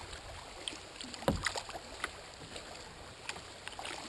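Small splashes and lapping of water against a kayak hull as it is paddled along, with a louder knock a little over a second in.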